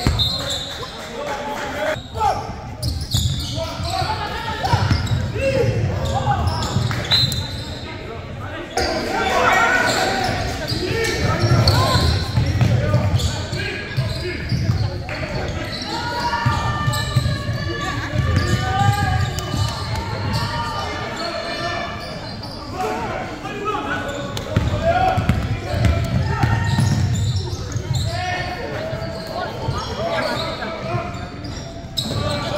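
A basketball bouncing and dribbling on a hardwood gym floor during play, with scattered knocks, under indistinct shouts and chatter from players and spectators, all echoing in a large gymnasium.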